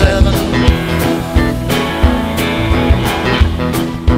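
Rock song playing: guitar over bass and a steady drum beat, with no singing in this stretch.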